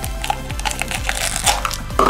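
Shiny foil blind bag crinkling and crackling in the hands as it is pulled out and torn open, over background music.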